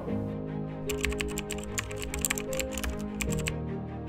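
Background music with a quick run of computer-keyboard typing clicks from about one second in until about three and a half seconds in, a typing sound effect for a web address going into a search bar.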